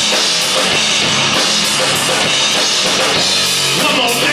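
Live rock band playing loud: electric guitar, bass guitar and a drum kit with cymbals, in a stretch where the drums stand out and no one sings.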